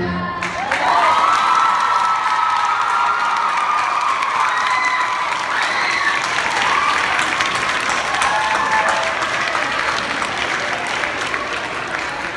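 Audience applauding, with cheering voices and a long high whoop over the clapping in the first few seconds.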